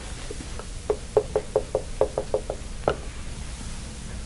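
A dry-erase marker knocking against a whiteboard in quick strokes while writing: about a dozen short taps over two seconds, fastest in the middle, with a last, louder tap near the end of the run.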